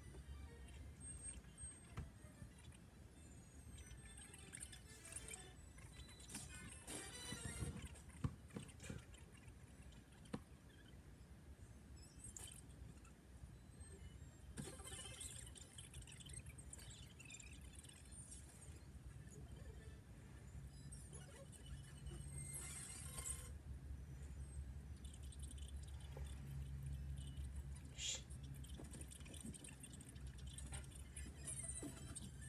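Faint animated-film soundtrack, mostly music, playing through a laptop's speakers and picked up from the room. A low hum under it grows stronger about two-thirds of the way through.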